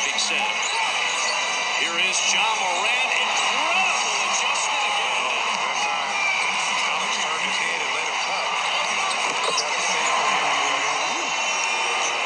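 Basketball game broadcast sound: a steady wash of arena crowd voices, with a basketball bouncing on the court.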